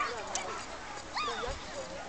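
A dog whining, with a couple of short rising cries about a second in, over people's voices in the background.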